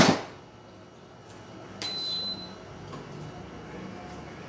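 A loud knock at the very start, then about two seconds in a sharp metal click with a short, high ring, as the stand mixer's wire whisk and tilting head are lowered back into the stainless steel mixing bowl.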